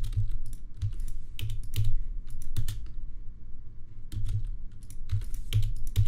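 Computer keyboard keys and mouse buttons clicking in short, irregular clusters of a few strokes each, with dull low thumps from the desk, as video clips are cut and trimmed with keyboard shortcuts.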